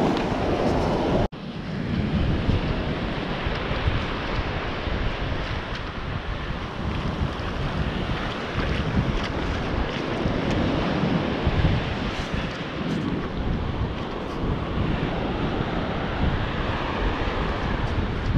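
Shallow surf washing in over wet sand, with wind buffeting the microphone. The sound cuts out abruptly for an instant about a second in.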